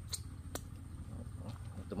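Quiet, steady low background hum with two small clicks near the start, about half a second apart.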